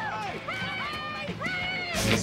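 Several people shouting and cheering at once, long overlapping calls that rise and fall in pitch.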